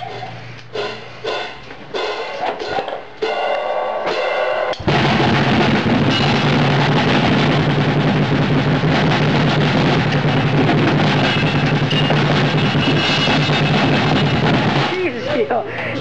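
Acoustic drum kit being played: a few separate hits, then about five seconds in a loud, fast, unbroken barrage lasting about ten seconds that stops shortly before the end.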